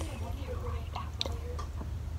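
Quiet whispering close to a phone's microphone, with a few small clicks over a steady low rumble.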